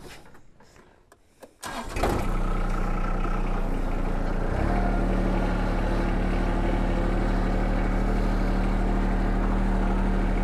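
Small tractor/mower engine cranked and catching about two seconds in, then running at a steady speed, which picks up a little halfway through. A few faint clicks come before it starts.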